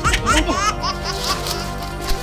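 High-pitched laughter, a quick run of short ha-ha bursts that trails off about a second in, over steady background music.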